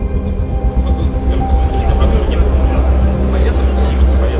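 Background music of held ambient tones over a heavy, steady low drone, with indistinct crowd chatter underneath.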